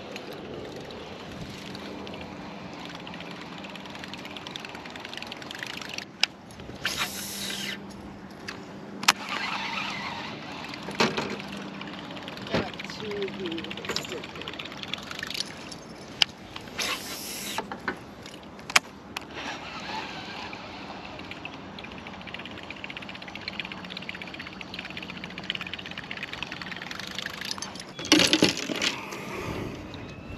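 A baitcasting reel being cast and cranked in, with scattered sharp clicks and a few short hissing rushes over a steady low hum.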